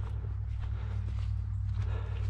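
Footsteps at a walking pace through matted dry grass and mud, over a steady low rumble.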